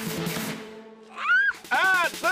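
High-pitched rhythmic shouting from a tug-of-war team straining on the rope, with two rising-and-falling calls in the second half, over background music.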